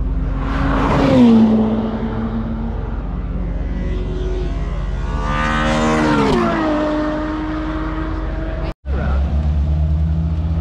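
Ferrari engine at speed passing by on the track, its note climbing, then dropping sharply as the car goes past about six seconds in; a smaller falling engine note comes about a second in. After a brief break near the end, a steady low engine rumble.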